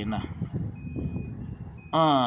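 Low engine rumble with short high beeps repeating about once a second, like a vehicle's reversing alarm.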